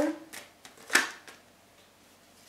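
Tarot cards being handled on a table: a couple of light clicks, then one sharp card snap about a second in.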